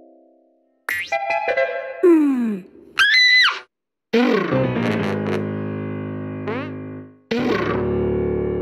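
Cartoon music cues with comic sound effects. After a moment of silence come short plucked notes and a falling glide, then a whistle-like tone that rises and falls about three seconds in. Held chords follow, fade out, and start again near the end.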